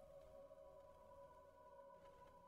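Near silence, with a few faint, steady electronic tones held in the background.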